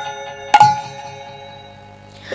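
The end of a hand-drum passage: one last sharp stroke about half a second in, then its ringing, pitched tone fading away.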